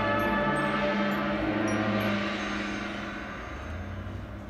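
Marching band holding a sustained chord that slowly dies away, with low notes carrying on underneath as it fades.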